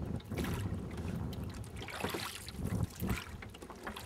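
Wooden oars working in the water as a small rowboat is rowed, their blades stirring and dripping water, with wind noise on the microphone.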